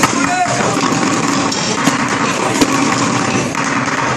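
Many wooden drumsticks beating upturned plastic buckets at once, a dense run of overlapping hits, with children's voices over it.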